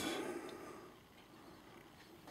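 Faint, near-silent room tone, with the tail of the preceding voice dying away in the first moments.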